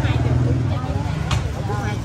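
Busy street-stall chatter: several people talking over one another above a steady low rumble of street traffic, with one sharp click about a second and a half in.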